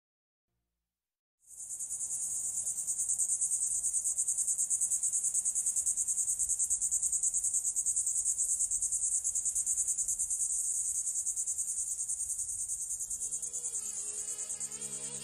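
After about a second and a half of silence, a steady, high, cricket-like insect chirring starts abruptly and pulses rapidly. It is a nature sound opening a new track in the mix. Soft synth music begins to come in under it near the end.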